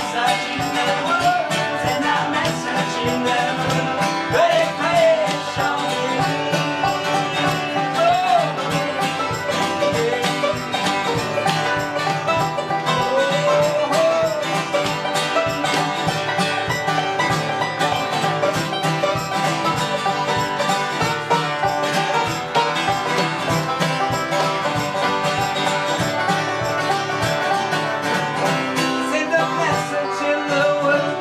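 Acoustic guitar strummed and banjo picked together in a fast, even bluegrass-style rhythm.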